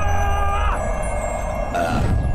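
Magic-transition sound effect: a steady low rushing wind with held chime-like tones over it; the chimes stop under a second in, and a brief higher rush comes near the end.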